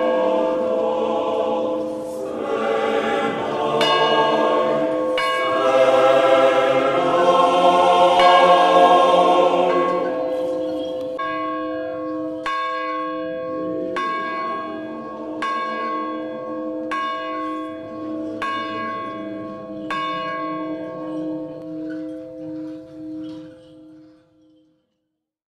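Monastery church bells rung by rope from a wooden bell tower. First comes a dense peal of several bells together, then a single bell struck evenly about every second and a half over a steady ringing hum, dying away near the end.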